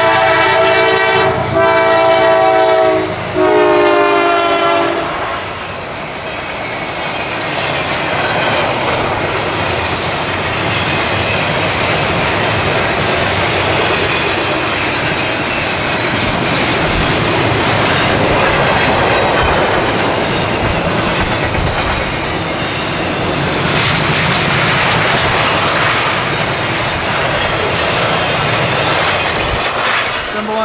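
CSX freight locomotive's air horn sounding three long blasts in the first five seconds, then the steady rumble and wheel clatter of a long double-stack container train rolling past.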